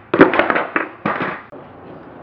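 Skateboard deck and wheels coming down on a concrete driveway after a flip trick, clattering in a quick string of sharp hits over about a second, loudest just after the start.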